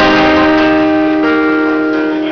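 Guitar chord strummed and left to ring, with a few more notes joining just over a second in.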